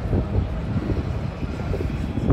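Steady low rumble of outdoor street noise.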